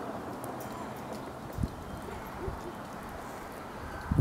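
Breeze rumbling on the microphone, with a soft thump about one and a half seconds in and faint bird calls in the background.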